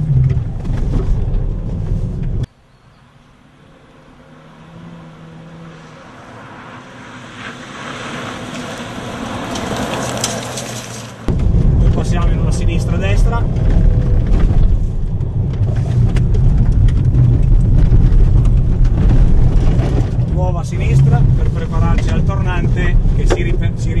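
Cabin noise of a Fiat Bravo driven hard on a gravel road: a steady low engine and road rumble. It cuts off abruptly about two and a half seconds in, a quieter stretch slowly swells, and the loud rumble returns suddenly around eleven seconds in.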